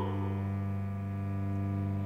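Cello holding one steady low bowed note, with no singing over it.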